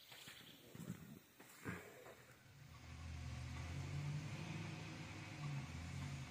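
A heavy diesel engine running steadily at low revs, growing louder about a third of the way in after a quieter start with a couple of short knocks.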